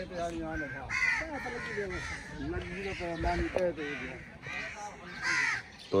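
Crows cawing repeatedly, short harsh calls a second or so apart, with people talking in the background.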